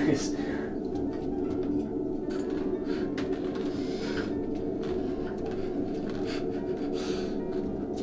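A steady low hum made of several held tones runs under the scene, with a short laugh at the start and a few faint clicks.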